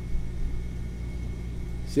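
Steady low rumble with a hum, picked up by a second studio microphone left switched on.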